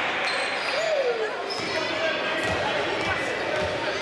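Live basketball game sound in a sports hall: a ball bouncing several times on the court in the second half, thin shoe squeaks, and players' and spectators' voices echoing in the hall.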